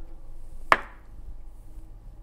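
One sharp knock about a second in as a large kitchen knife chops down onto a cut-resistant knit glove on a wooden cutting board, with a brief ring after it; the glove stops the blade.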